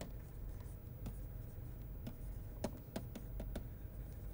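Stylus writing on a tablet screen: faint, irregular light taps and scratches of the pen tip as a word is handwritten, over a low steady hum.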